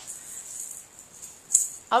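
A baby's small handheld toy rattle being shaken: a faint, high shaking hiss with one sharper rattle burst about a second and a half in.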